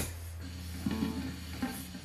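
Electric Stratocaster played through a high-gain distortion pedal, idling between notes: a steady amp hum and hiss, with a sharp click at the start and a few faint, lightly touched string sounds.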